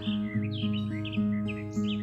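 Acoustic guitar with a capo playing a steady picked accompaniment, low notes ringing on and re-struck about twice a second, while small birds chirp repeatedly in the background.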